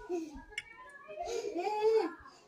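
A young child crying and whining: short high whimpers, then a longer rising wail that is held toward the end.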